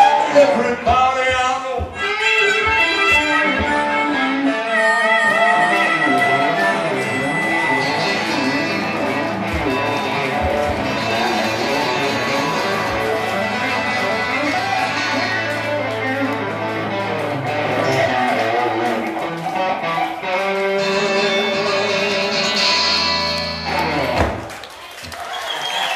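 Live blues guitar duo, an acoustic and an electric guitar playing together, building toward the song's end with held, ringing notes in the last few seconds.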